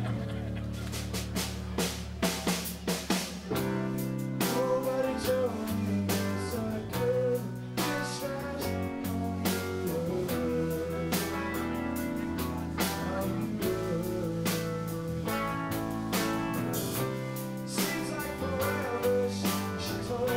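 Live band playing a rock song: drum kit, keyboard and guitar, with a man singing lead over them.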